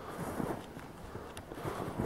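Footsteps crunching in snow, two steps about a second and a half apart.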